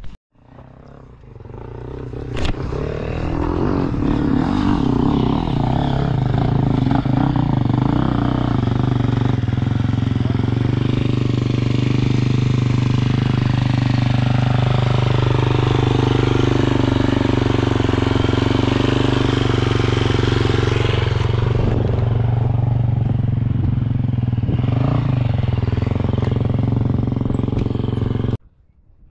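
Enduro dirt bike engine running close by, growing louder over the first few seconds, then held with the revs rising and falling, and dropping back over the last several seconds.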